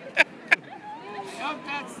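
A man's laughter ending in two short sharp bursts, then low crowd voices and a man starting to speak near the end.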